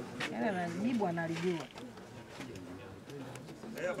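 A man's voice speaking indistinctly for about the first second and a half, then quieter background talk.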